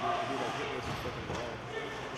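A person talking, with a dull knock about a second in.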